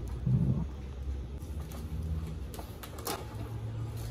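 Plastic cling wrap being pulled from its box and pressed around a cut cabbage half, with a few sharp crackles of the film. A low steady hum runs underneath.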